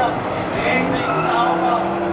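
Engines of a group of drift cars running at high revs across the track, with tyres squealing as they slide through the corner, over the talk of nearby spectators.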